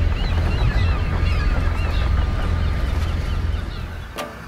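Low, steady rumble of a boat's engine on the water with many short bird calls over it, fading away near the end.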